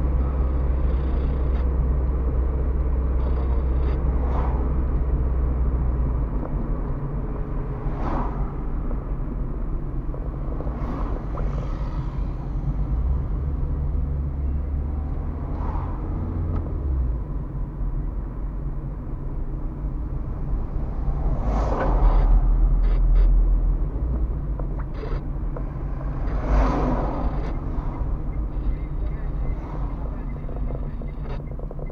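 Car cabin driving noise: a steady low engine hum and tyre noise on asphalt. The engine's pitch shifts a few times, and several louder swells of road or passing-traffic noise come near the middle and towards the end.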